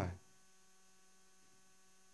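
A spoken word cuts off just at the start, followed by a faint, steady electrical mains hum.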